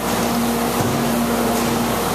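Steady, even roar with a low hum beneath it, running without a break.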